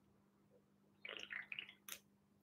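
Faint sounds of a man drinking from a can: a few soft gulps a little after the first second, then a short click near the end, over a low steady hum.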